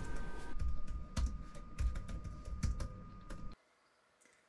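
Typing on a laptop keyboard: a quick, irregular run of key clicks with some softer thuds, cutting off abruptly shortly before the end.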